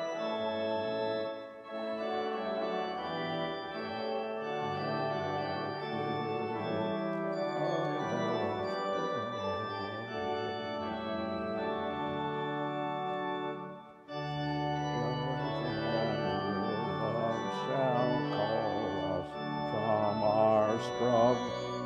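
Church organ playing a hymn in held chords, with brief breaks between phrases about one and a half seconds and fourteen seconds in.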